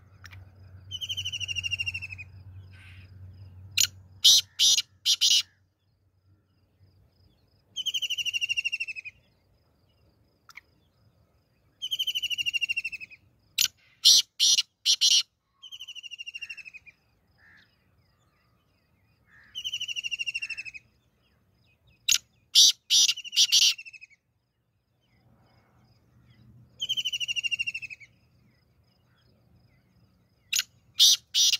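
Black francolin (kala teetar) calling repeatedly: a grating, falling note about a second long, recurring every few seconds, and three times followed by a loud run of short, sharp notes.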